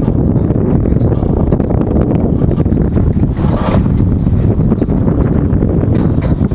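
Steady, loud low rumble of wind buffeting the microphone outdoors, with a brief fainter sound about three and a half seconds in.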